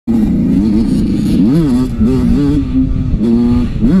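Dirt bike engine running under way, its pitch rising and falling with the throttle, with a sharp rev up and back down about one and a half seconds in and another rise near the end.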